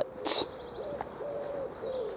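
A pigeon cooing in a run of short, low coos, one after another. A brief hiss about a quarter second in is the loudest sound.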